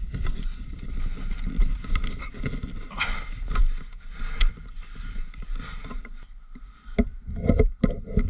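Handling and movement noise on action cameras carried by a crouching airsoft player: an uneven low rumble with scattered clicks and knocks as the camera-mounted rifle is set down on the grass and moved about.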